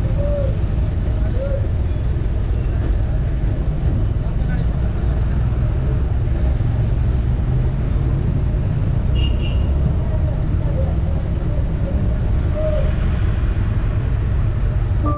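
Bus engine and road noise heard from inside the moving bus: a loud, steady low rumble.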